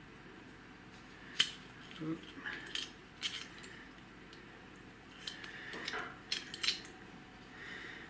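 Sharp clicks and light metallic taps from a small metal bracket and its clips being handled. The loudest click comes about one and a half seconds in, followed by scattered quieter taps.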